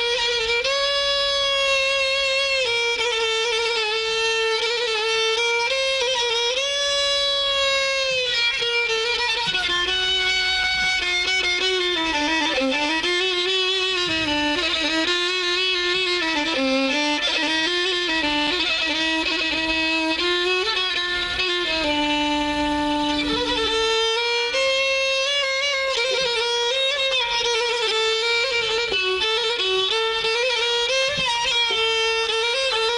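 Solo violin playing an Arabic taqsim, an unaccompanied improvisation on a maqam: a single ornamented melodic line with slides and held notes. It drops to a lower register in the middle, holds a long low note, then climbs back higher near the end.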